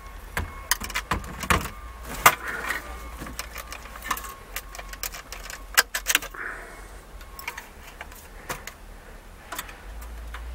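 Irregular clicks and light metal clinks as a pulled car radio unit and its thin metal removal tools are handled.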